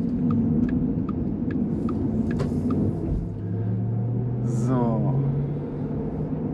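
Inside the cabin of a Porsche Taycan electric car on the move: a steady road and tyre rumble, with a low electric-drive hum that rises slightly in pitch from about halfway as the car gathers a little speed. Light, evenly spaced clicks tick through the first half.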